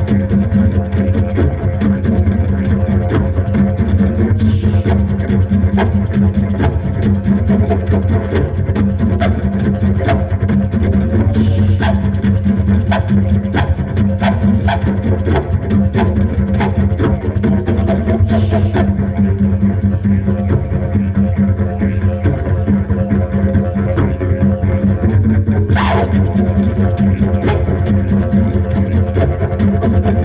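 Didgeridoo played as a continuous low drone with a fast, driving rhythm of sharp accents over it, and a few brighter, higher bursts here and there.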